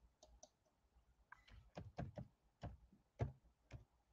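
Near silence broken by faint, irregular clicks and taps, about ten of them, most in the latter part.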